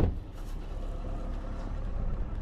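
A short, loud thump right at the start, then a steady low hum of outdoor background noise.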